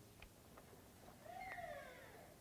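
Near silence in a pause of speech, with one faint, short, falling whine about a second and a half in.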